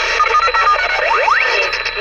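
Galaxy DX 33HML CB radio's speaker hissing with static as another station keys up, sending a short run of electronic beep tones and then two quick rising whistles about a second in.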